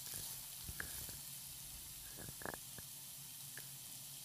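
Chopped vegetables (onion, tomato, peas, carrots) sautéing in oil in a non-stick pan, sizzling faintly and steadily, with a few short scrapes and taps of a spatula stirring them.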